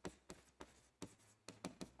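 Faint, irregular taps and scratches of a stylus writing on an interactive display screen, several short ticks spread across the moment.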